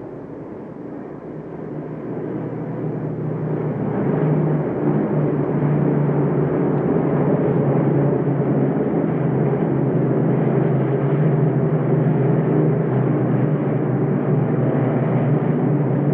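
Steady drone of piston-engined propeller aircraft, growing louder over the first four seconds and then holding level.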